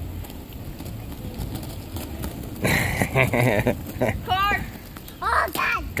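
Rumble of quad roller skate wheels rolling over rough asphalt, with girls' voices calling out in short bursts in the second half, one of them a high rising and falling call.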